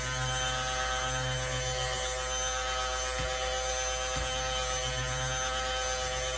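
Stick blender running at a steady, even pitch in a metal bowl, mixing melted oils into goat's milk and water to smooth the lotion emulsion.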